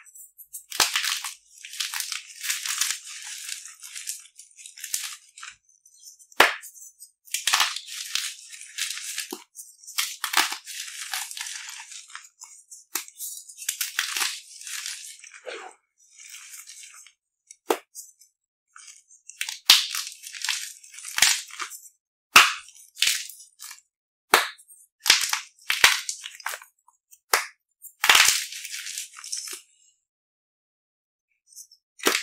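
Dyed chalk cubes crunching and crumbling as fingers squeeze and crush them. The sound comes in repeated bursts of crackling broken by short pauses, with sharper snaps as cubes break apart.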